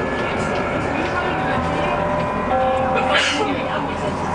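Tram running along its track, heard inside the rear car: a steady rolling rumble with a few held, even tones, and a brief hiss about three seconds in.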